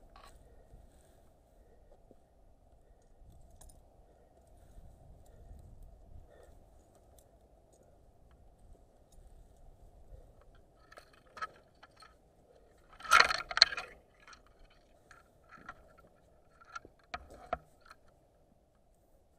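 Metal climbing hardware, carabiners and a rope friction device, clinking in scattered light clicks, with a louder run of jangling about two-thirds of the way through and a few sharp clinks near the end.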